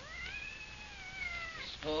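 A cat's long drawn-out meow, rising in pitch and then sliding down again before fading out, as a radio-drama sound effect.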